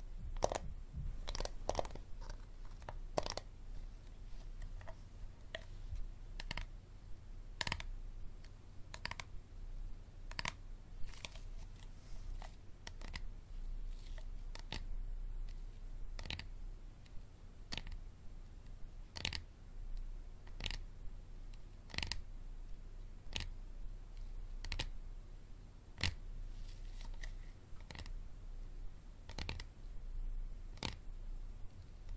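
Fingers tapping and clicking on a hard plastic Dasani water bottle: sharp, separate taps at an uneven pace, roughly one a second, coming quicker near the start.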